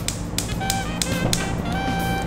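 Gas cooktop's electric spark igniter clicking repeatedly, about three ticks a second, as a burner is lit, over steady background music.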